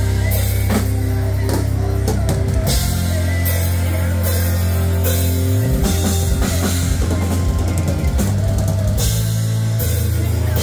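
Live rock band playing loud, with a heavy, sustained bass and a drum kit hitting repeated cymbal crashes.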